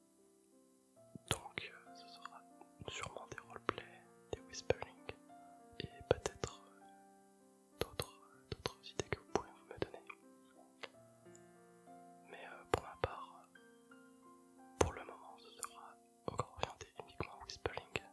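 A man whispering close to the microphone, with crisp consonant clicks and short hissing breaths, over soft background music of held notes.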